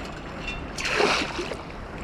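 Seawater splashing briefly about a second in as a perforated steel sand scoop is handled in the shallows, over a steady low wash of water.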